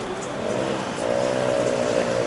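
A motor vehicle's engine running. Its pitch and level rise slightly about a second in, then hold steady.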